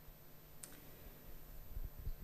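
A single short, sharp click about half a second in, over faint room tone, then soft low thumps near the end.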